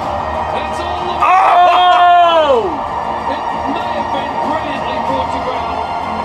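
A long vocal exclamation starting about a second in, held and then sliding down in pitch, over steady background music.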